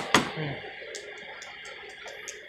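A single sharp knock just after the start, then low background noise with a few faint, scattered clicks.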